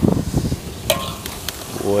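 A metal spatula stirring and scraping chicken feet in thick chili sauce around an aluminium wok over a fire, the food sizzling, with a sharp clink of the spatula on the pan about a second in.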